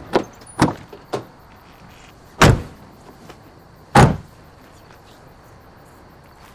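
Pickup truck doors being shut: a few lighter knocks in the first second, then two loud slams, about two and a half and four seconds in.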